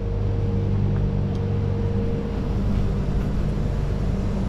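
Steady low machine hum of several held tones, with a fainter higher tone that fades out about two-thirds of the way through.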